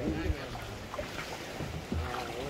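Fast ebb-tide current rushing through a narrow tidal creek and washing against a small wooden boat as it is pulled upstream, with wind buffeting the microphone. A man's voice is heard briefly at the start and again near the end.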